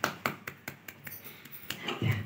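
Plastic baby walker clicking and clattering as the baby moves and handles it: sharp, irregular taps, several a second.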